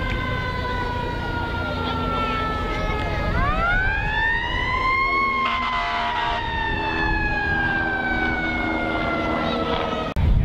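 Emergency vehicle siren wailing: a slowly falling tone, then a quick rise a little over three seconds in that peaks around five seconds, then a long slow fall again. Low rumble of wind and background noise underneath.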